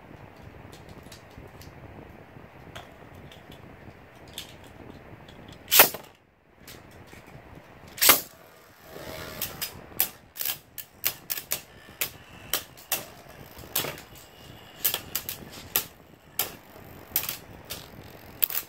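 Two sharp plastic clacks about six and eight seconds in. Then two Beyblade spinning tops whirr in a plastic stadium, with rapid, irregular clacks as they strike each other and the stadium walls.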